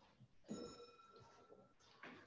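A faint, brief ringing tone sounds about half a second in and fades after about a second, over near silence.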